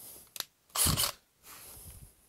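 Gloved hands handling a cordless drill: a sharp click, then a brief scraping rustle about a second in and a fainter rustle near the end.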